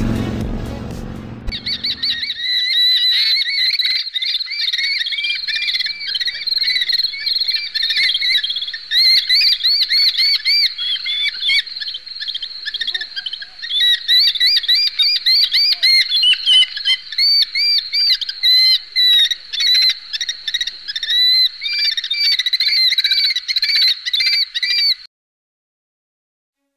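A flock of small birds calling in dense, overlapping rapid calls, sounding thin with no low end. The calls start about a second and a half in as music fades out and cut off suddenly about a second before the end.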